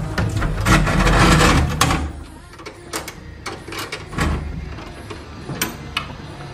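A white wooden glazed balcony door being unbolted and pushed open: rattling and scraping of the metal bolt and frame for about two seconds, then a few separate clicks.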